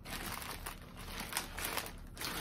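Plastic packaging crinkling as it is handled, a run of small crackles.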